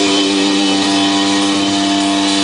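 Loud live rock band music: electric guitars and bass hold one sustained chord that rings steadily.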